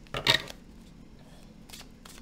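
A deck of tarot cards handled over a wooden table: one short shuffling clatter a fraction of a second in.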